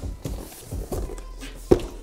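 Packaging boxes being handled: soft scraping and rustling against the cardboard, with a sharp knock near the end.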